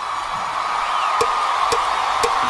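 Concert crowd cheering under a steady held musical note, with a few sharp clicks in the second half.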